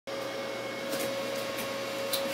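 Steady room noise, a hiss and hum with a thin steady mid-pitched tone running through it, and a couple of faint ticks.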